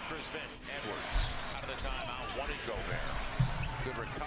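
A basketball being dribbled on a hardwood arena court, heard through a TV game broadcast, with arena crowd noise behind it.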